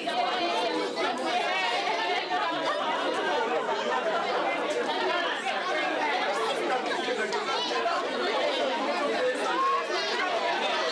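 Crowd chatter: many people talking at once in a steady hubbub of overlapping conversations.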